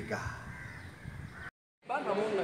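Faint background noise after a man's voice trails off, broken by a split second of dead silence at an edit. A man's voice then starts again near the end.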